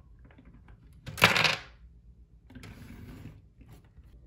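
LEGO plastic parts clicking as a LEGO Technic attachment is pushed against a LEGO bench model, its trigger tipping the cube holders. About a second in comes a short, loud clatter as the LEGO cubes drop onto the plastic base. A softer scraping of plastic sliding follows.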